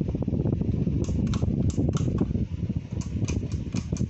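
Ceiling fan running, with its moving air fluttering in a ragged low rumble close to the microphone. From about a second in, a quick series of sharp light clicks joins it.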